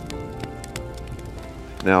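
Wood campfire crackling with scattered sharp pops and snaps, one louder at the start, over background music with sustained notes; a man's voice starts right at the end.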